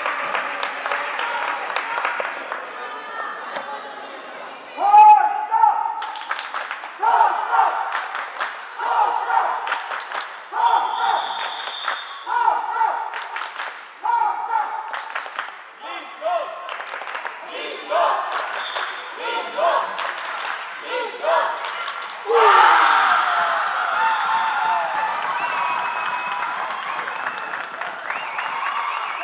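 Floorball play echoing in a sports hall: sharp clacks of sticks and the plastic ball, with short shouted calls about once a second through the middle stretch. A louder, sustained burst of shouting and cheering starts about two-thirds of the way through.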